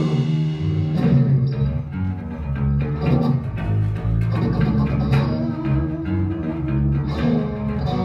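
Live blues band playing: electric guitar and electric bass over a drum kit.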